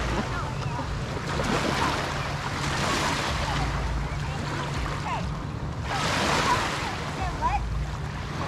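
Small lake waves lapping and washing against the shore, swelling and fading about every three seconds, over a low wind rumble on the microphone.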